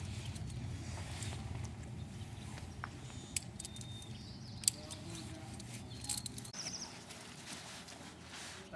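Low, steady rustling handling noise with two sharp clicks a little over a second apart, the second one the loudest, in the middle of the stretch.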